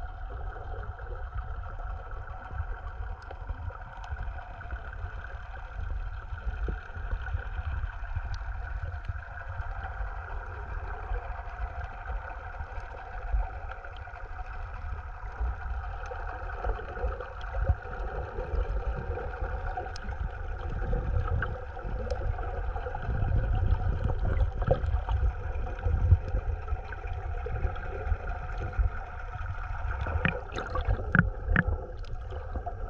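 Underwater recording: a low rumble of water moving against the microphone, with a steady droning hum of several layered tones and a few faint scattered clicks. The rumble swells somewhat in the second half.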